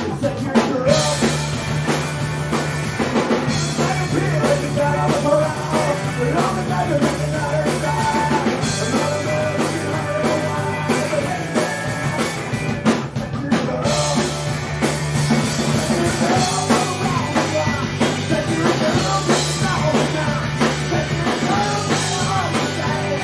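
Live rock band playing a song: distorted electric guitar, bass guitar and a drum kit, with a man singing.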